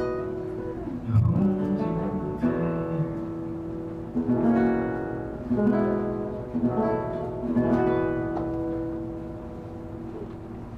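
Acoustic guitar played solo, chords struck about every second and a half and left to ring, growing quieter near the end.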